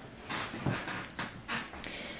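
Several short, soft rustles of a hand reaching across a cluttered makeup vanity and picking up a small plastic cushion-compact.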